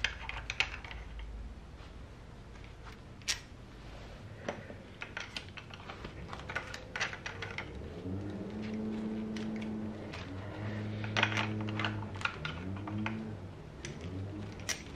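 Metal clicks and taps of a socket on a long extension as motorcycle spark plugs are loosened and lifted out of the cylinder head. In the second half a steady low hum comes in three stretches, each rising in pitch at its start.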